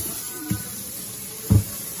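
A spoon stirring pellets, vegetables and water in a rubber feed pan, with two dull thumps as the spoon or pan knocks: a small one about half a second in and a louder one about a second and a half in. Faint music plays underneath.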